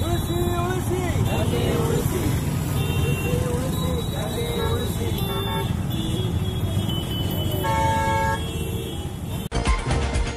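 Street traffic rumble with voices chattering nearby; a vehicle horn sounds once, briefly, near the end. Just before the end the sound cuts abruptly to a news channel's music jingle.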